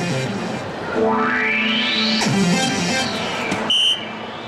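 Electronic sound effects from a DARTSLIVE soft-tip dart machine: a long rising synthesized sweep followed by a falling one, then a short high beep near the end as a dart scores a single 20.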